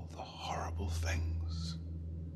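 Breathy whispering in several short bursts over a low, steady drone from the trailer's score.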